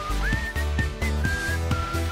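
Short upbeat jingle: a whistled melody that steps and glides over a steady bass line and beat.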